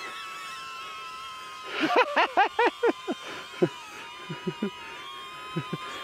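Steady high whine of a DJI Neo's small propellers as the drone hovers close by. A man laughs in a quick run of bursts about two seconds in, with a few short chuckles after.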